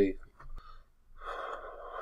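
A faint click, then a long audible breath close to the microphone, starting just over a second in and lasting about a second and a half.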